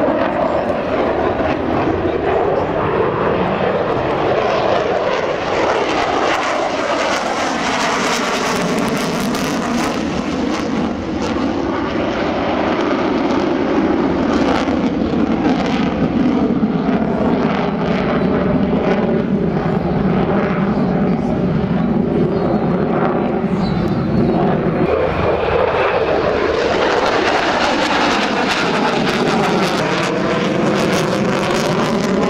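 Sukhoi Su-30MKM fighter's twin AL-31FP turbofan jet engines running loud and continuous through aerobatic manoeuvres. The tone sweeps up and down again and again as the jet moves about overhead.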